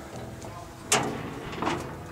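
The hood of a 1957 Chevrolet being raised, with a sharp metallic clunk about a second in and a lighter clunk just after.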